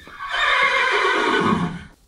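A horse whinnying: one long neigh of about a second and a half, sliding lower as it ends.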